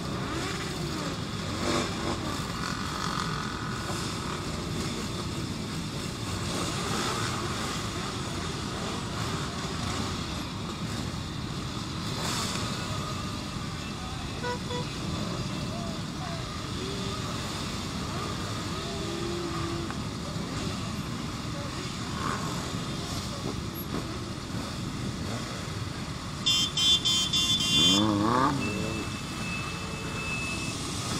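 Many motorcycle engines idling together in a dense pack, a steady rumble with scattered voices. Near the end a horn sounds loudly for about a second and a half, followed by a brief sound rising and falling in pitch and a thin steady tone.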